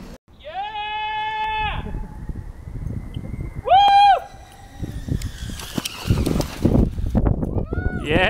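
Two high, held whooping cries, the first over a second long and the second short a couple of seconds later, followed by a rustling, crackling noise.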